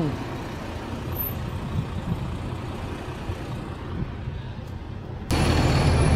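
Steady outdoor rumble of idling buses. About five seconds in it jumps suddenly to a louder, closer engine rumble.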